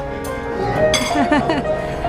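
Background music with a steady held tone, voices, and a single sharp clink just under a second in.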